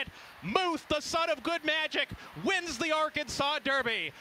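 A race caller's fast, high-pitched voice calling the final furlong and finish of a horse race.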